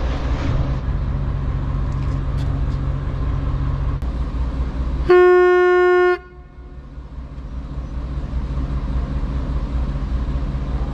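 A Dutch barge's engine running steadily, with one horn blast about five seconds in, held for about a second at a single steady pitch and cut off sharply. After the blast the engine noise dips, then slowly builds back.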